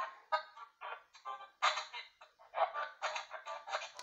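Spirit box app playing through a tablet's speaker: a rapid, choppy stream of short, thin-sounding fragments of voices and tones, switching every fraction of a second with brief gaps between them.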